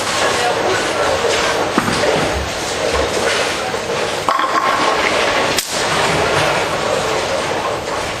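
Tenpin bowling alley din: balls rolling and pins clattering on many lanes, with a crowd chattering. Partway through, a bowler's ball rolls down the lane and crashes into the pins.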